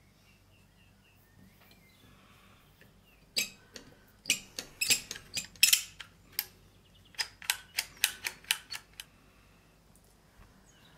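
Sharp metallic clicks and clacks, about fifteen of them in an irregular run lasting some five seconds, as the levers and bolt inside the rusted steel case of an antique door lock are worked by hand with a metal tool.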